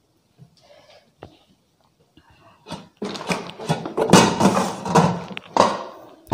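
Handling noise from a stainless steel kadai and its glass lid being moved off the table: a faint click early, then rustling and knocking in the second half.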